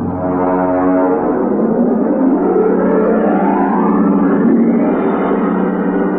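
Brass-heavy orchestral theme music of an old-time radio show, a loud sustained chord with a rising glide that climbs for about two seconds starting about two seconds in, settling into a held chord.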